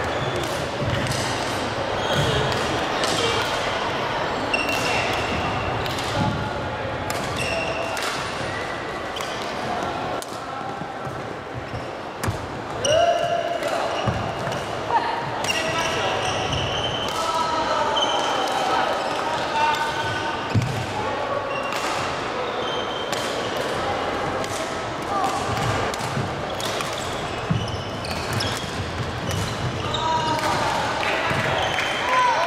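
Badminton rallies in a large reverberant hall: sharp racket strikes on the shuttlecock and short squeaks of court shoes on the wooden floor, over a background of indistinct chatter.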